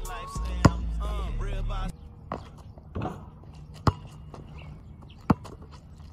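A basketball bouncing on an outdoor asphalt court: about five sharp, separate bounces, unevenly spaced. A hip-hop track with rapped vocals plays over the first two seconds, then drops out.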